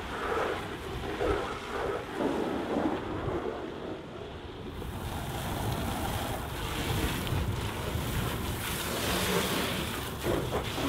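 Wind buffeting the microphone, then from about five seconds in a hose spraying water onto a rigid inflatable boat's deck and seats, a steady hiss.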